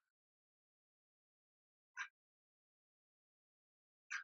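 Near silence, broken once about two seconds in by a brief, soft sound from a woman doing bicycle-clap crunches on a mat.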